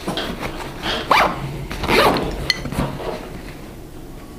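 Two short dog barks, about a second apart, over quiet rustling of the backpack's nylon fabric as it is handled.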